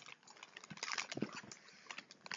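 Faint irregular crackles and clicks of crisps being chewed and a crisp packet being handled.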